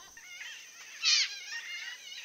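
Birds calling: a run of short chirps that waver quickly up and down in pitch, the loudest group about a second in.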